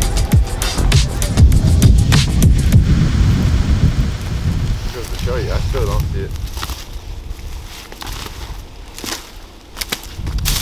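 Background music with a heavy bass fades out over the first few seconds. Footsteps then crunch through dry leaves and brush.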